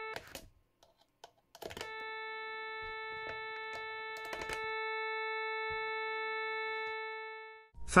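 Sawtooth test tone passing through a summing mixer: a steady buzzy tone with many overtones. It cuts off with a click just after the start as a jack plug is pulled from an input, is silent for about a second and a half, and returns with another plug click. It steps up in level about four and a half seconds in and fades out just before the end.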